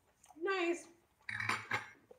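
A man's pitched, appreciative "mmm" while tasting food, rising and falling, then a metal spoon clinking and scraping against a dish for about half a second.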